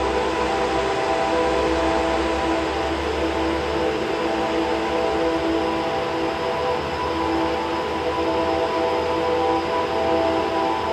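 Ambient music: a layered drone of held tones over a wash of hiss-like noise and a low rumble, with no beat.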